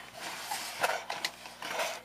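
Rustling and crinkling of a paper postal mailer as it is picked up and handled, with a few sharp ticks and taps.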